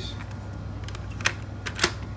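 Two sharp clicks from the cassette deck transport buttons of a Yamaha AST-C10 boombox being pressed, a little over half a second apart, in the second half.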